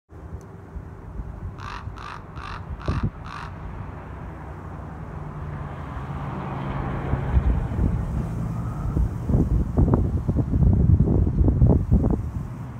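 A crow cawing five times in quick, even succession. After that, wind buffets the microphone in gusts that grow louder toward the end.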